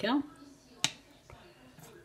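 A brief falling vocal sound at the start, then a single sharp click a little under a second in: a knife tapping the ceramic plate as the flan is cut.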